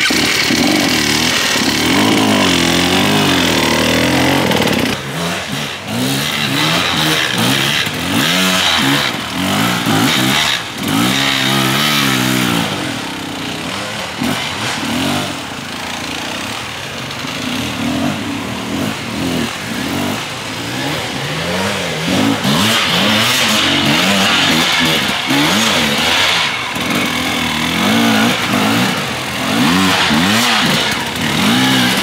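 Dirt bike engines revving hard in repeated bursts, the pitch rising and falling over and over as the bikes are worked up a steep, rough slope.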